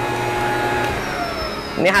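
Worcraft cordless twin-battery blower-vacuum running as a blower with a steady motor whine, then winding down with a falling pitch about a second in.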